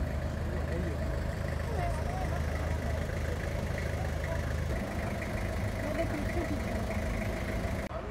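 Outdoor ambience dominated by a steady low engine hum, like a vehicle idling, with faint voices of people talking in the background.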